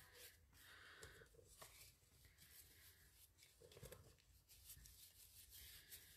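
Very faint strokes of a paintbrush spreading matte medium over paper scraps, a few soft separate swishes against near silence.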